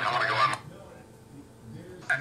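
A short fragment of voice in the first half second, then a faint steady low hum as the room falls quiet.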